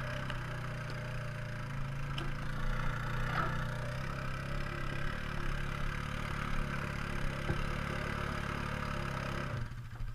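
ATV engine running steadily at low speed while one quad tows the other on a strap, a steady engine hum that drops off abruptly near the end.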